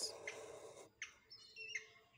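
Felt-tip permanent marker drawing across paper with a soft, faint scratch, then a few brief high chirping tones that step in pitch.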